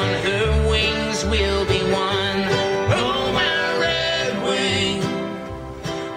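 Live acoustic string band music: upright bass, acoustic guitar and mandolin playing on after a sung word ends a verse, the level easing briefly near the end before the chorus comes in.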